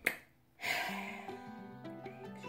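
A single sharp snap right at the start, then after a short gap background music with plucked-string notes comes in about half a second later and runs on.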